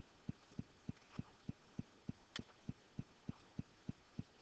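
Faint, even low thumping, about three beats a second, from an unidentified steady rhythmic source, with one sharp click about two and a half seconds in, typical of a computer mouse click.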